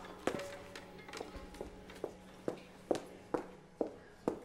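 Hard-soled footsteps on a hard floor in a large quiet hall, about two steps a second and steadier and louder in the second half, over a faint low held tone that fades away.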